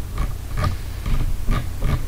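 Computer mouse scroll wheel ticking notch by notch as a page scrolls: short, irregular clicks about two or three a second over a steady low hum.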